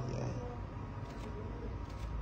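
Steady low room hum, with a brief murmur of a voice at the start and a couple of faint clicks.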